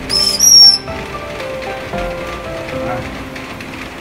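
Two loud, shrill, high-pitched calls, one right after the other near the start, from a red green-cheeked conure being put back into its cage by hand. A soft melody then carries on underneath.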